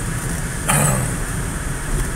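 Road and engine noise inside a moving car's cabin: a steady low rumble, with a brief hiss about a third of the way in.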